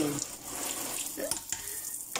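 Water running steadily from a kitchen tap, with a few words spoken briefly over it.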